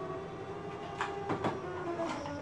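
Silhouette Cameo 4 electronic cutting machine running a cut through faux leather: a steady motor whine, with a few light clicks about a second in.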